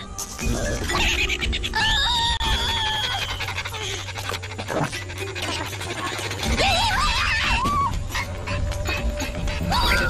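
Animated cartoon soundtrack: background music with a steady bass line, and over it high, wavering wordless vocal sounds from a cartoon character.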